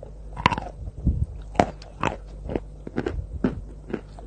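Close-miked biting and chewing of white eating chalk: a run of sharp, dry crunches about every half second.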